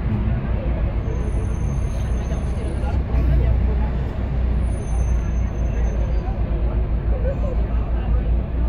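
City tour bus on the move: a steady low rumble of engine and road noise, with indistinct voices of people around and two brief faint high whines.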